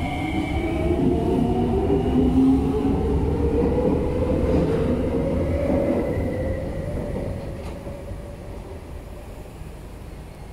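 C151C MRT train pulling out of the station. Its traction motors give a slowly rising whine as it accelerates over a low rumble, and the sound fades over the last few seconds as it leaves.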